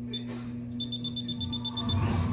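A steady low electrical hum, with a quick run of short high-pitched beeps, about ten a second, for about a second in the second half.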